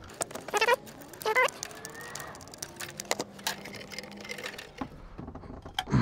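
Plastic wiring-harness plugs being pushed and locked onto a furnace control board: a run of sharp clicks with a couple of short squeaks in the first second and a half, then quieter clicking handling.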